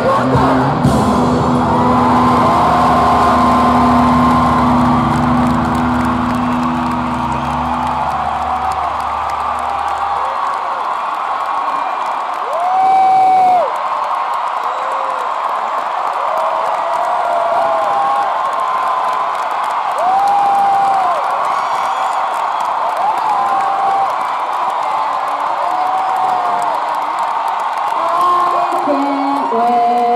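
A live rock band's final chord held and ringing out, fading away over the first ten seconds or so, under an arena crowd cheering and screaming; the cheering and high-pitched screams carry on after the band stops.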